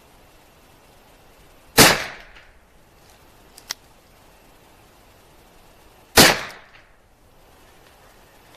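Two gunshots from a Taurus Judge revolver firing .45 Colt, about four and a half seconds apart, each a sharp crack with a short echo tailing off. A faint click falls between them.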